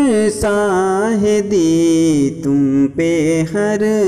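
A man singing an Urdu salat-o-salam, a devotional salutation to the Prophet, in a long melodic line with wavering, ornamented notes and brief pauses for breath.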